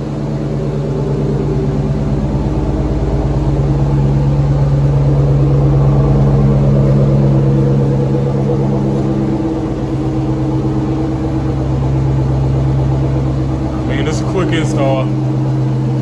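Dodge Challenger R/T's 5.7-litre Hemi V8 idling steadily, louder in the middle as the exhaust at the rear comes closest.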